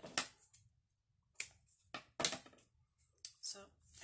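Handling noise from a small twine-tied bundle of paper note cards: about five short, crisp paper-and-card sounds spread over four seconds, with quiet gaps between them.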